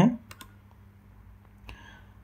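The tail of a spoken word, then a few faint, scattered clicks over a steady low hum.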